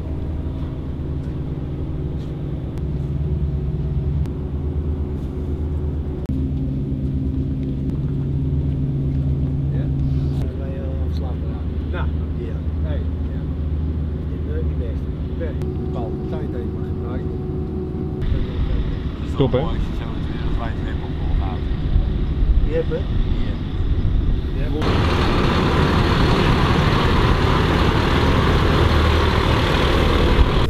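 A large vehicle engine running steadily with a low hum, with voices in the middle, then much louder engine noise for the last few seconds as a rally truck drives past.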